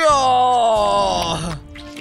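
A man's long drawn-out groan, 'aaah', sliding slowly down in pitch and stopping about a second and a half in. It is the groan of someone overfull after gorging on food.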